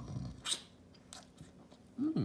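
A person chewing a mouthful of banana close to the microphone, with a couple of short, sharp wet mouth clicks.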